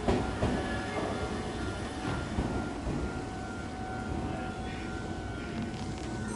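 Meitetsu electric train (3100-series car leading a 3700/3100-series set) pulling away from the platform. Its motors give a steady whine over the rumble of the wheels, with a sharp clunk right at the start.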